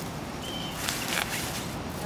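Leaves and weed stems rustling and crackling as weeds are pulled by hand from a shrub bed, in a few short rustles about a second in.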